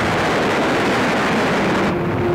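Steady, loud roar of a dubbed newsreel aircraft-engine sound effect for a fighter plane strafing, with no separate gunshots or blasts standing out.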